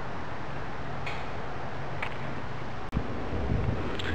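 Steady background hum and hiss with no speech. A brief dropout about three seconds in, after which low rumbling noise.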